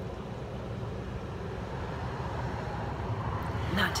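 A low, steady engine rumble in the background, swelling a little toward the end. A woman begins speaking just before the end.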